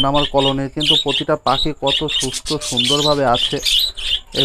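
A colony of budgerigars chattering and chirping without a break, many birds at once.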